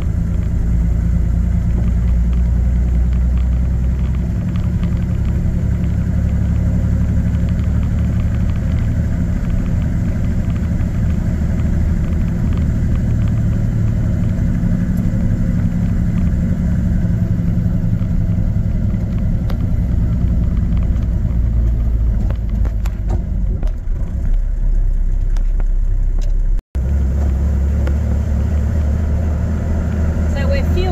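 Four-wheel drive's engine and road noise while driving slowly through town: a steady low rumble, broken by a split-second gap near the end.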